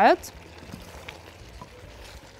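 A silicone spatula stirring chunks of beef and vegetables in a pot, faint soft scraping with a few light knocks over a low sizzle.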